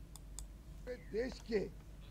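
Two short clicks, then a man speaking for a moment into a cluster of press microphones.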